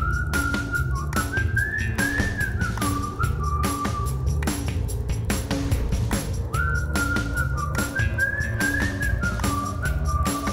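Background music: a whistled lead melody over a steady beat and bass, its phrase starting over about halfway through.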